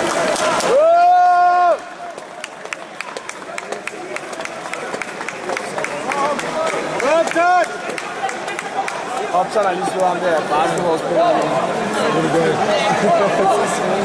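Spectators' voices in a sports hall: a man's loud held shout of about a second, just under a second in, and a shorter rising shout around seven seconds in, then overlapping chatter.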